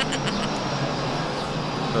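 An airplane flying overhead: a steady engine noise that interrupts the talk.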